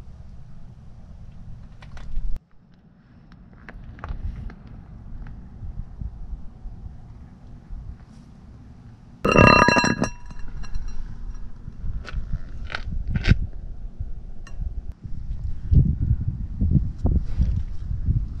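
Hand work on a Mercedes W123 front wheel hub. About nine seconds in, the brake disc rings out with a clang, followed by scattered sharp metallic clicks and taps, all over a low wind rumble on the microphone.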